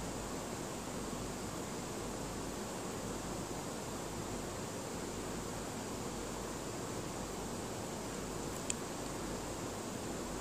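Steady, even background hiss with one faint click about nine seconds in.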